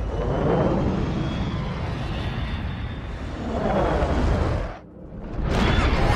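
Jet aircraft engines roaring past in film sound effects, with two sweeping swells, one just after the start and one about four seconds in. The roar drops away abruptly near five seconds, then comes back with music just before the end.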